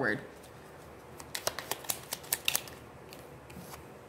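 Tarot cards being handled as a card is drawn from the deck: a quick run of light, sharp clicks starting about a second in and lasting about a second and a half.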